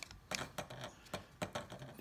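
Light, irregular clicks and taps of an ESC mounting plate being worked into place between an RC helicopter's carbon-fibre side frames, about two to three small clicks a second.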